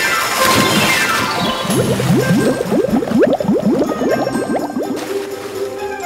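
Cartoon water sound effects over music: a splash with a falling slide in pitch, then from about two seconds in a fast run of short rising bubbling blips.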